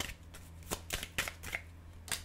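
Tarot cards being shuffled by hand: a run of sharp, irregular snaps and slaps as the cards strike one another, about six or seven in two seconds.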